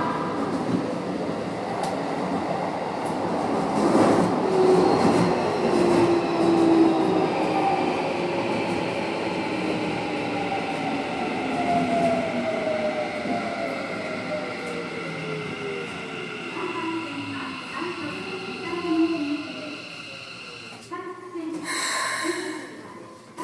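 Toei Asakusa Line subway train braking into a station. Its motor whine falls steadily in pitch as it slows, over wheel and rail noise. A short hiss comes near the end as the train stops.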